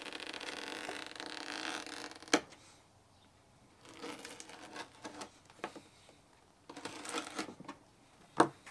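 A small razor-blade knife slicing through the rubber sidewall of a car tire. A steady cutting sound for about two seconds ends in a sharp click, then after a pause come short bursts of cutting.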